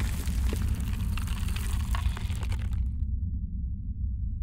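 Logo-intro sound effect: a deep rumble under crackling, gritty noise that dies away about three seconds in, leaving the low rumble alone.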